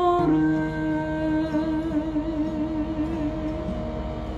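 A man's voice holds one long, wavering final note over the ringing notes of a steel-string acoustic guitar, closing the song.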